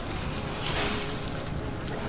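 Steady background room noise with a faint, even hum, and soft chewing from a mouthful of sauced lobster.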